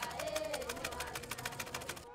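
Sewing machine stitching: a fast, even run of ticks, about fourteen a second, that stops abruptly near the end. A sustained wavering musical tone sounds over it.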